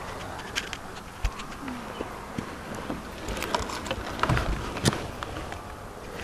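Scattered light knocks and clicks over low rustling: a person moving about and handling things.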